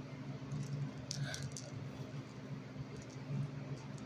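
Close rustling and a short flurry of small clicks about a second in, from a hand moving right by the microphone, over a steady low hum.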